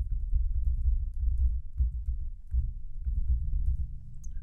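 Typing on a computer keyboard: a run of dull keystrokes with a low thud under each, broken by a couple of short pauses.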